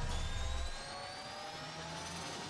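Synthetic rising 'riser' sound effect from a channel intro: several thin tones slowly climb in pitch over a whooshing hiss, building up, with a low rumble underneath that drops away less than a second in.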